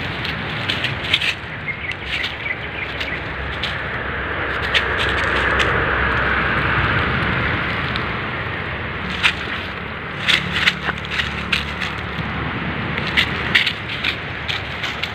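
Dry leaf litter crackling and crunching under footsteps and a dog's movements, in sharp irregular clicks over a steady rushing hiss that swells in the middle.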